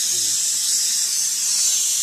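Steady, high-pitched hiss of a dental saliva ejector drawing suction in a patient's mouth, running without a break.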